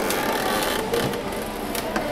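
Close handling of a packaged hair clip: its cardboard tag and plastic rustling and clicking as it is turned over in the hand, with a couple of short clicks, over steady shop background noise.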